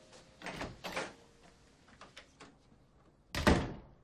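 A few knocks and clicks of a door being opened, then the door slammed shut hard about three and a half seconds in, the loudest sound.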